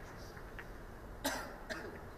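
A person coughs sharply once a little past halfway, then gives a weaker second cough or throat-clear shortly after, over a low hum of hall noise.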